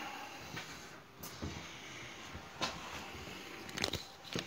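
Quiet room hiss with a few faint clicks and light knocks, several close together near the end.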